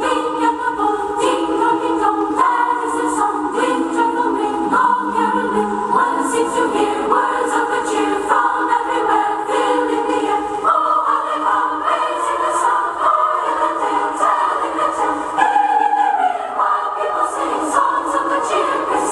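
A choir singing held notes that change every second or so.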